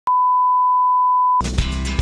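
Steady 1 kHz broadcast test tone accompanying colour bars, which cuts off about 1.4 s in. Background music with a low beat begins right after it.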